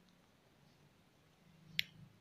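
Near silence broken by one brief, sharp click near the end.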